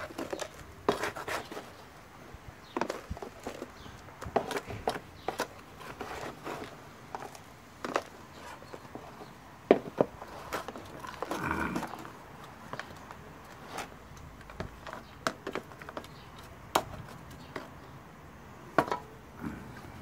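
Metal hand scoop digging into potting soil in a plastic basin and tipping it into a plastic pot, with irregular scrapes, knocks and clicks of the scoop against soil and plastic. A brief pitched sound comes a little past halfway.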